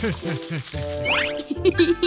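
Cartoon sound effect of toys rattling and clattering in a cardboard box, over light background music, with a few quick falling tones in the first half second.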